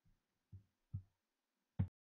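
Four short, soft low thumps with quiet between them: a faint one at the very start, two more about half a second apart, and the loudest one near the end.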